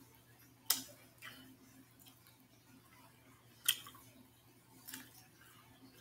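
Quiet eating sounds: chewing, with three sharp mouth smacks, about a second in, near four seconds and near five seconds.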